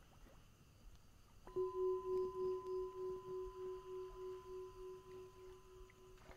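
A meditation bell of the singing-bowl kind is struck once about a second and a half in. It rings on with one steady tone and a fainter higher overtone, pulsing about three times a second as it slowly fades. The bell marks the start of a session of meditation and prostration.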